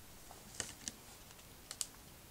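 1998/99 Upper Deck MVP hockey cards being handled and flipped through by hand, giving four faint clicks of card stock: two a quarter-second apart about halfway in, then two quick ones near the end.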